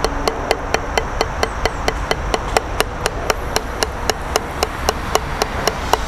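Drumsticks striking a Gransen rubber drum practice pad in a steady, even stream of single strokes, about six or seven taps a second.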